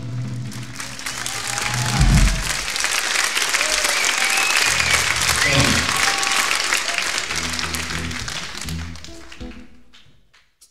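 Club audience applauding and cheering, with a few whistles, in a live rock recording. A low thump comes about two seconds in, and a few low instrument notes sound under the applause later on before it all fades out near the end.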